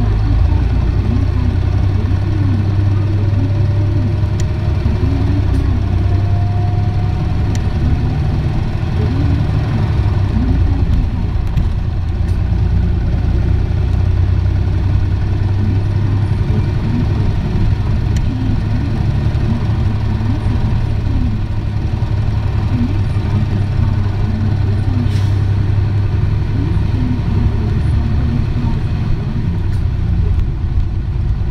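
Running sound of an Isuzu Erga diesel city bus heard from on board: a steady low engine and road rumble as it drives, with a faint whine rising in pitch for a few seconds near the start.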